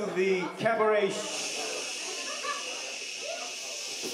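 A voice with a clear pitch for about the first second, then a steady hiss that starts abruptly and holds, with a man talking faintly beneath it.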